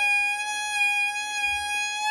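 Solo violin playing a klezmer melody, bowing one long sustained note.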